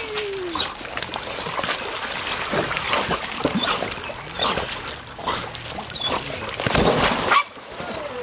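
Dogs whining and yipping excitedly over water splashing as retrievers swim in a pool; the sound is loudest near the end, then drops off suddenly.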